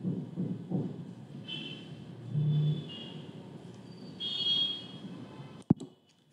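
Low room noise with faint, indistinct background sounds, then a single sharp computer-mouse click near the end, after which the sound drops out completely.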